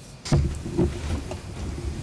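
Handling noise on a desk microphone as it is moved and adjusted: a sharp knock about a third of a second in, then further knocks and low rumbling rubs.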